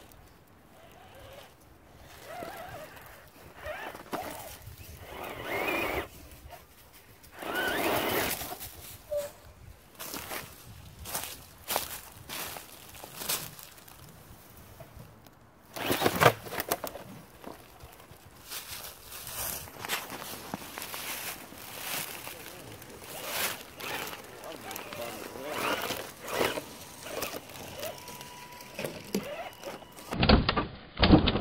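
Electric RC scale crawler climbing over logs: its drivetrain whirs in bursts, and the truck knocks against the wood many times, loudest about sixteen seconds in.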